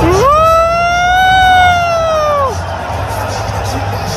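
Stadium crowd noise with one long pitched tone over it. The tone slides up at the start, holds for about two seconds and drops away.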